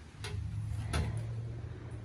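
Two footsteps on the wooden floor of a storage shed, sharp knocks about 0.7 s apart, over a low steady hum.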